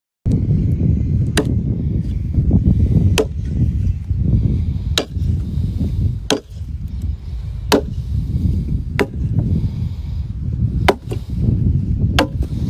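Axe blade striking a log as it is chopped through by hand: sharp, single strokes about every one and a half seconds, eight in all, two of them close together near the end. A steady low rumble runs underneath.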